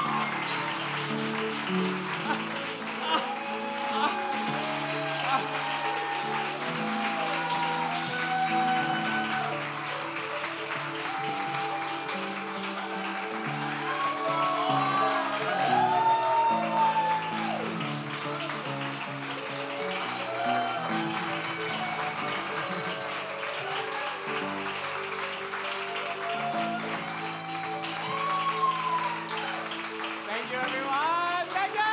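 Live music with sustained chords changing every second or two, a voice singing over it, and an audience clapping.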